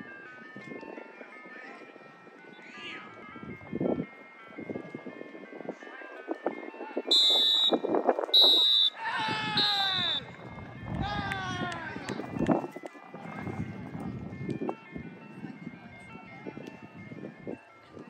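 Three sharp blasts of a referee's whistle in quick succession about seven seconds in, the full-time signal, followed by players shouting. A faint jingle tune of stepping notes plays underneath in the first half.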